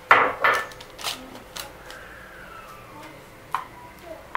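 A metal fork scraping and tapping on a paper-lined tray as sticky candied watermelon-rind cubes are spread out to dry. Two louder scrapes come right at the start, followed by scattered light clicks.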